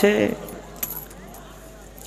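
A man's amplified voice through a public-address system ends a phrase, its echo trailing off in the first moments. Then comes a pause of low background noise with a few faint clicks.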